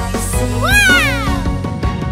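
A cat's meow sound effect, a single call that rises and then falls in pitch, over background music.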